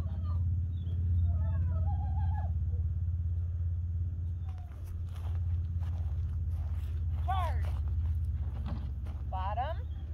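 A handler's high, sliding voice calls cueing a dog on an agility course, one about seven seconds in and a longer wavering one near the end, over a steady low rumble of wind on the microphone.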